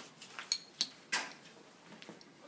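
A few short, light clinks and knocks, three in quick succession from about half a second to just over a second in.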